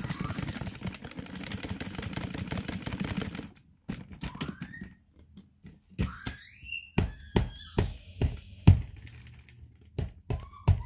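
Dyson vacuum cleaner running over a pile of dust and hair, its motor cutting off abruptly about three and a half seconds in. A run of sharp knocks follows in the second half, with a few brief rising whistly sounds.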